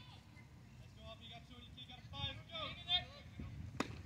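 Faint voices calling out across a baseball field, then near the end a single sharp crack of a baseball bat hitting the pitched ball.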